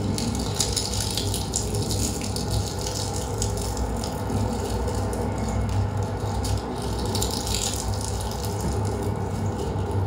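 A recorded sound piece, made in a savannah, played over room speakers: dense, irregular crackling and rattling over a steady low hum.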